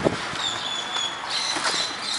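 Loaded wheelbarrow of wet concrete being pushed across a concrete floor: the wheel rolling with a rough, scraping noise, a few clicks from the frame, and thin high squeaks.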